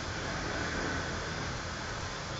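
Steady background noise with a low rumble, unchanging throughout, with no distinct knocks or voices.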